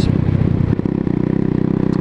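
A 125cc motorcycle engine running steadily at low revs, an even, unchanging note with no revving.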